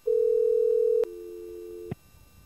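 Telephone line tones from a computer phone call as the far end hangs up: one loud steady tone for about a second, then a quieter two-note tone that cuts off suddenly just before two seconds.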